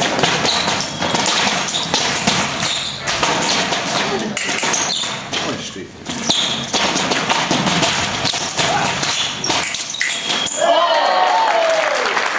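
Fencing bout: taps and thuds of fencers' footwork on the piste and blades clicking together, over voices in the room, with a loud yell near the end.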